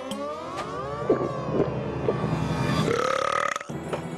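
One long, drawn-out cartoon burp from a boy who has just gulped a glass of water. It runs for more than three seconds, rising in pitch at first and shifting near the end before it stops.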